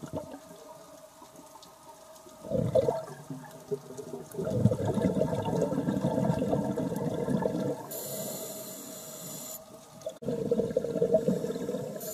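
A scuba diver's regulator heard underwater: bubbly rushes of exhaled air, with a short one about two and a half seconds in, a long one lasting over three seconds, and another near the end. A thin hiss of the inhale sits between the last two.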